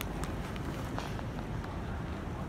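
Footsteps walking on a hard, polished terminal floor: a few short sharp steps over a steady low rumble.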